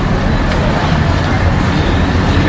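Steady outdoor street noise: road traffic running, with a low rumble and faint voices in the background.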